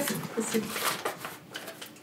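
Soft brushing and handling as a pastry brush greases a ceramic baking dish, under quiet speech.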